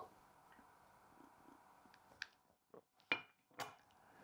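A man sipping a drink from a mug: a few short, faint sips and swallows about two to three seconds in, then a light knock near the end as the mug is set down on the table.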